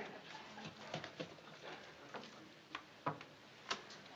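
A wooden spoon scraping and knocking against a metal pail as wet patching plaster is scooped out and dropped onto a board: quiet scraping with several sharp taps, the clearest after about a second and near the end.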